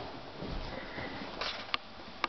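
Soft rustling and scuffing from close handling during play with a kitten, with a single sharp click about three-quarters of the way through.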